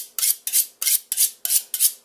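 Large kitchen knife being honed against the spine of a second knife, used in place of a honing steel: a fast, even run of short metal-on-metal scraping strokes, about three a second.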